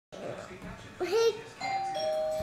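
A short child's voice sound about a second in. Then comes a two-note electronic chime, a higher note stepping down to a lower one, each held at an even pitch, like a doorbell ding-dong.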